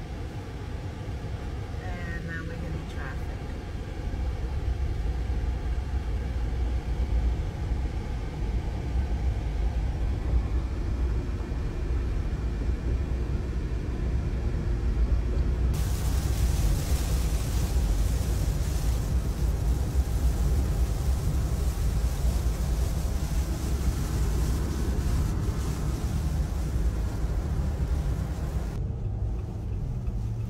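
Steady low road rumble inside a moving car. About halfway through, a hiss of rain and a wet road suddenly joins it and runs until near the end.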